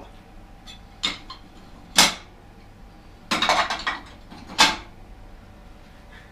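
Ceramic plates and dishes clattering as they are loaded into a dishwasher's racks: four separate clinks and knocks, one of them a short rattling run.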